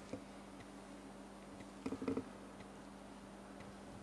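Quiet room tone in a large hall: a steady low hum with faint ticks about once a second, and a short muffled sound about two seconds in.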